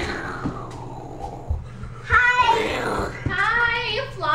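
A young child's wordless, high-pitched sing-song vocalizing, loud and starting about two seconds in. A few soft low thumps of footsteps on the floor come before it.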